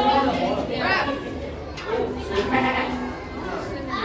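Indistinct chatter of several people's voices, with one voice held on a single drawn-out note for about a second past the middle.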